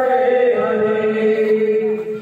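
Male kirtan singers chanting together, holding one long sustained note that breaks off at the end.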